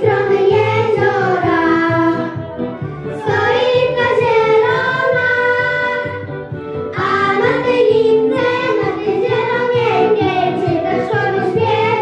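A group of young girls singing a song together in Polish into handheld microphones.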